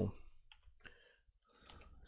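A few faint, scattered clicks from working a computer keyboard and mouse while code is being selected, after the tail of a spoken word at the very start.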